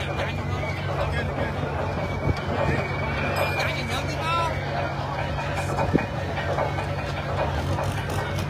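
An engine idling steadily with a low hum under the chatter of a crowd, with one sharp knock about six seconds in.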